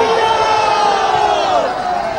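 A large rally crowd shouting together in one long, loud collective cry that falls away in pitch near the end.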